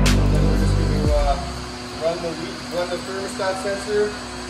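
Electronic music with a heavy bass line, marked by a sharp hit at the start and cut off about a second in, followed by speech.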